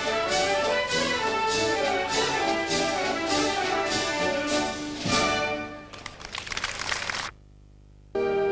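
Wind band of brass and woodwinds playing with percussion strokes about twice a second. About five seconds in the piece ends on a loud final accent, followed by a short crackling noise that cuts off abruptly into a moment of quiet.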